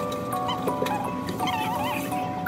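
Background music: a light melody of held notes, with short warbling glides near the middle.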